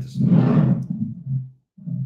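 A man's voice drawing out a word into a long, steady-pitched hum, then two short hums about half a second apart.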